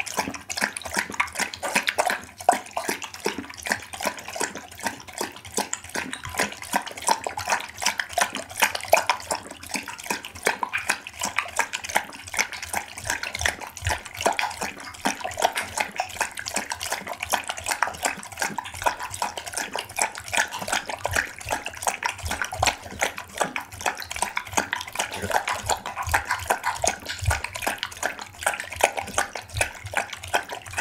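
Pit bull lapping liquid from a glass bowl: rapid, continuous wet laps of the tongue, recorded close up.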